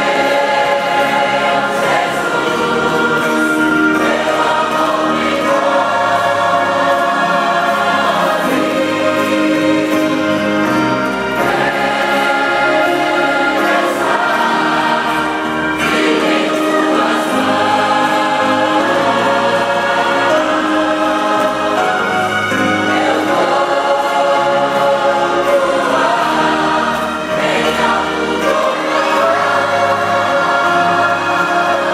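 A large mixed choir of men and women singing a gospel hymn together, many voices holding long notes at a loud, steady level.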